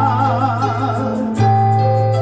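Live music: a male singer holding a note with a wavering vibrato over an electric keyboard's chords and bass line, with the keyboard moving to a new chord and bass note about one and a half seconds in.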